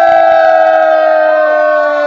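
Several men shouting one long held cry together, loud and steady, its pitch sinking slightly.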